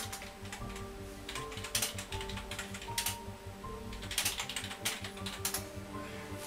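Typing on a desktop computer keyboard: irregular clusters of sharp key clicks, with a flurry of fast keystrokes about four seconds in. Background music plays underneath.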